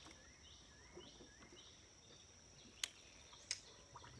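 Faint outdoor ambience: a steady high insect drone with repeated short rising chirps of a calling bird. Two sharp clicks come near the end, about half a second apart.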